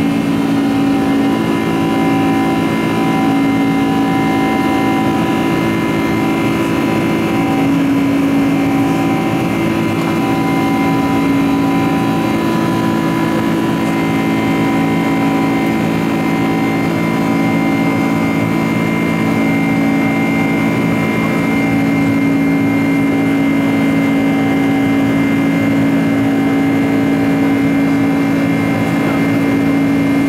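Boeing 747-400's General Electric CF6-80C2 turbofan engines running at climb thrust, heard inside the cabin beside the wing: a steady engine drone with several held hum tones, a higher whine joining about halfway through.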